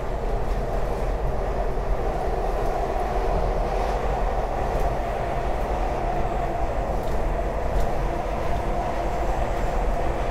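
SEPTA Market-Frankford Line train running along the track, heard from inside the car: a steady rumble of wheels on rail with a humming tone over it and a few faint clicks.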